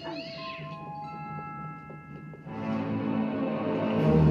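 A cartoon cat's short, wavering yowl, then a string of held chime-like notes at different pitches, and music swelling near the end.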